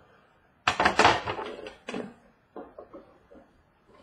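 A trading-card box being opened by hand on a table: its lid is pulled off and the box handled. This gives a burst of scraping and knocking about a second in, then softer rustling.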